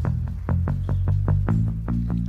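An instrumental stretch of a 1950s-style rock and roll song with no singing: a bass line stepping from note to note under a steady beat of about five hits a second.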